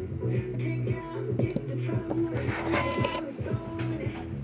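Upbeat pop song with a steady dance beat and bass line, played over FM radio.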